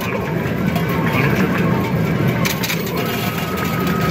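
Arcade coin pusher in rapid-fire play: metal tokens dropping and clinking onto the playfield in a steady clatter over loud arcade background noise. A steady electronic tone sets in about three seconds in.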